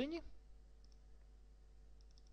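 A couple of faint computer mouse clicks about a second in, over a low steady electrical hum, with a spoken word trailing off at the very start.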